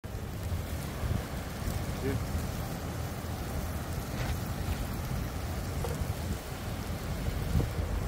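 Steady low rushing of wind on the microphone.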